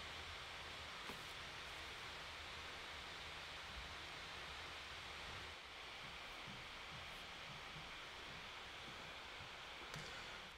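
Faint, steady whir of the 2019 16-inch MacBook Pro's cooling fans running hard under the load of a 4K Final Cut Pro export, dipping slightly a little past halfway.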